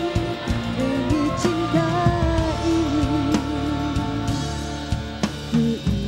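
Live band music with a drum kit beat under a held melody line that wavers with vibrato.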